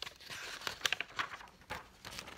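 A page of a picture book being turned by hand: paper rustling with a scatter of short, sharp crackles.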